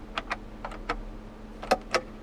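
Overhead-console map-light switches being pressed: a string of about six short, sharp plastic clicks spread over two seconds.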